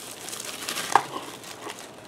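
Plastic bubble wrap crinkling as it is handled and pulled open, with one sharp click about halfway through.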